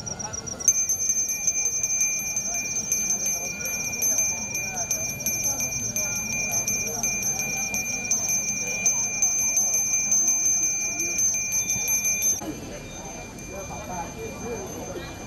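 A Balinese priest's brass hand bell (genta), shaken in a fast continuous tremolo so it rings steadily and brightly. It starts sharply under a second in and stops abruptly near the end.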